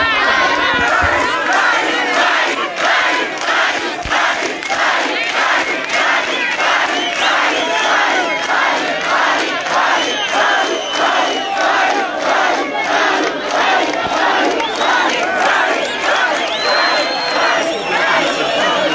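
Large crowd cheering and chanting in a steady rhythm of about two beats a second.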